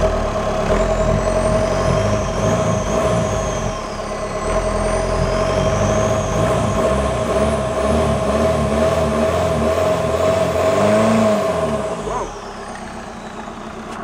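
Volkswagen 2.0 TDI (CJAA) turbodiesel engine revved with the gearbox in gear and the axles turning. A high whine follows the revs, easing off about four seconds in and climbing again, before the engine drops back to idle near the end. It is a test of whether the engine's parked rev limit lifts now that the ABS supplies a speed signal.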